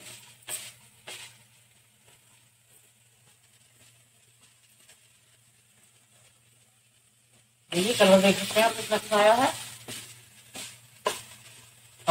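A wooden spatula stirring radish pieces in a nonstick kadai, with short scrapes twice near the start and twice more near the end.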